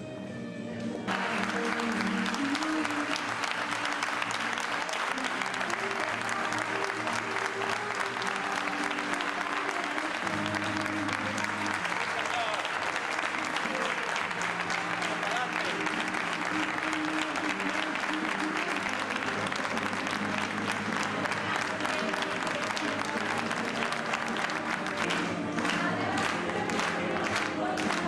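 Crowd applauding, many hands clapping; the applause swells in about a second in and then holds steady. Music with held chords plays underneath.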